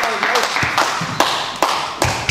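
Applause thinning out to a few single claps, each echoing in a large sports hall, with spectators' voices underneath.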